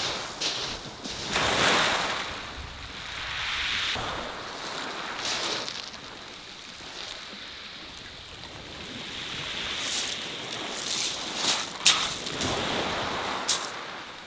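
Small waves breaking and washing up and back over a shingle beach, swelling and fading every couple of seconds, with wind on the microphone. A few sharp clicks come in the second half.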